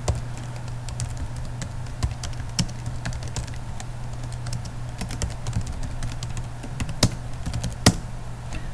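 Computer keyboard typing: irregular key clicks as a line of code is typed, with two louder key strokes near the end. A steady low hum runs underneath.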